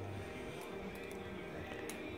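Barebones V2 balisong with a Hammer Designs blade being flipped by hand: a few faint, scattered clicks from the handles and blade. The knife runs on bushings and has just been tuned, so it is quiet.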